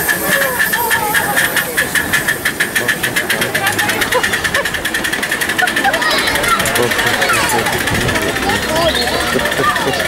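Miniature steam locomotive LNER 458 pulling away, its exhaust chuffs quickening for the first five seconds or so before blending into a steady hiss of steam.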